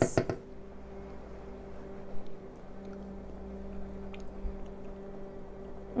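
Quiet kitchen background: a steady low hum, with a faint click about two seconds in and a soft thump a little over four seconds in while sauce is tasted from a spoon.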